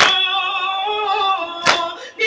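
Voices chanting a noha (Shia lament) in long, held lines, with a sharp slap of hands striking chests (matam) at the start and again near the end, part of a slow, even beat.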